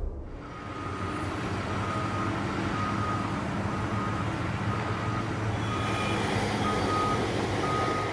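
A vehicle's reversing alarm beeping a single high tone about once a second, over a running truck engine and street noise.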